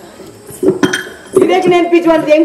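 Two sharp metallic clinks about a quarter second apart, the second ringing briefly. About halfway through, a man's voice begins a drawn-out, held note.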